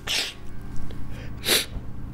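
A person sniffing sharply twice through the nose, once at the start and again about a second and a half later.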